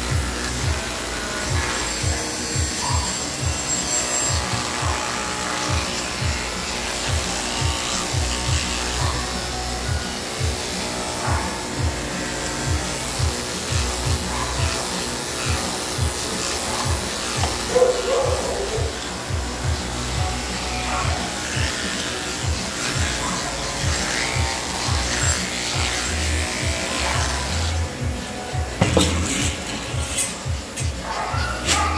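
Background music with a steady beat over the continuous hum of a cordless electric dog clipper trimming a Pomeranian's coat.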